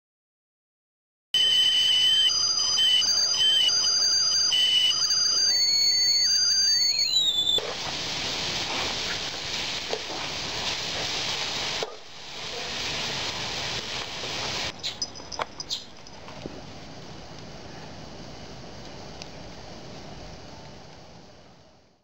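Minced meat frying in a steel wok, a steady sizzle with a few quick scrapes of a metal spatula against the pan partway through. It opens with several seconds of high, wavering whistle-like tones.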